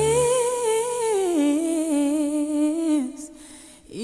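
A solo voice holding a long wordless note with vibrato in a song soundtrack. It glides up into the note, steps down to a lower held note, and fades out about three seconds in.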